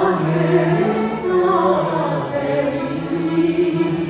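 A man and a woman singing together into microphones, holding long notes over an accordion accompaniment.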